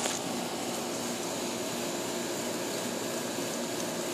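A steady, unchanging machine-like hum and hiss with a faint high whine, like a running air-conditioning unit.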